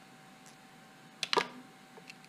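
Handling noise from a metal dial caliper: a quick pair of sharp clicks a little past halfway, followed by a short falling squeak, over a faint steady hum.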